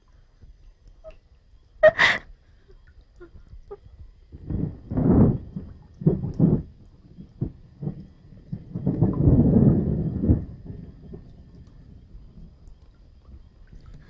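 A person's breathing and gasps, in irregular bursts with a longer breathy stretch near the middle, and a short sharp sound about two seconds in.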